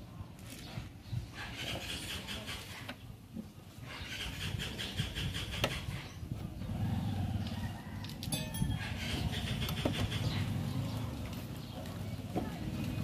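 Repeated high chirping bird calls over a low rumble that grows louder in the second half. A few small sharp clicks sound about halfway through and again in a quick cluster past two-thirds of the way, as hands work a park light into the car's front corner.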